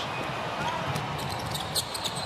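A basketball being dribbled on a hardwood court, with a few sharp taps over a steady haze of arena background noise.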